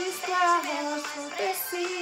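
A recorded Portuguese children's praise song: a sung melody over instrumental backing.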